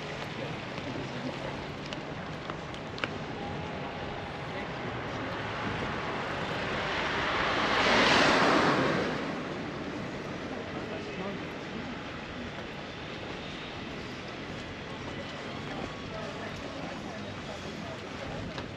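A car passing by on the street, its noise swelling to a peak about eight seconds in and fading within a couple of seconds, over steady street ambience with faint voices.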